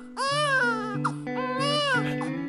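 A man's voice giving two long, drawn-out sung cries, each rising and falling in pitch, over steady sustained instrumental notes.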